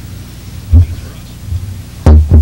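Pause in a meeting on an old video recording: steady mains hum and hiss, with one brief low sound about three quarters of a second in.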